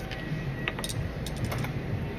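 A few light clicks and taps, clustered in the middle of the moment, as a gloved hand handles a small bottle and utensils at a counter, over a steady low hum.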